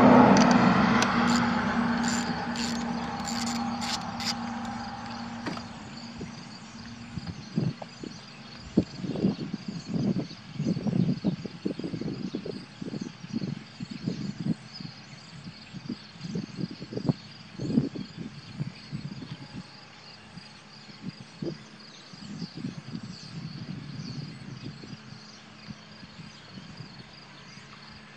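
A car battery's negative cable being loosened and lifted off its terminal post: a few light metallic clicks in the first few seconds over a hum that fades away over about five seconds. Then a quiet background with scattered faint sounds.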